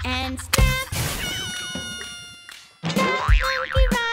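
Cartoon sound effects in a break in the children's music: a springy boing whose pitch slides down and fades away, then a wobbling, warbling tone near the end.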